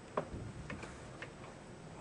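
A few soft clicks over faint steady room hiss, the sharpest about a quarter of a second in and three fainter ones within the next second.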